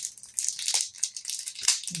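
Packaging crinkling and rustling by hand as an item is pulled out of a mailed package, in irregular short bursts of rustle.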